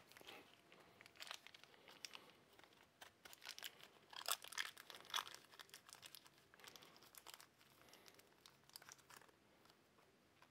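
Faint crinkling and crackling of plastic packaging being opened by hand, in scattered bursts, strongest about four to five seconds in.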